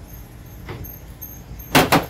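Faint steady background hum, then a short sharp clatter near the end from a small refractor telescope on its tabletop tripod being handled on a car hood.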